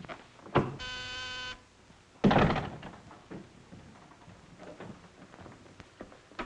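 A short knock, then an office intercom buzzer sounding once for under a second, a steady buzzing tone. About two seconds in comes a loud, heavy thud that dies away quickly.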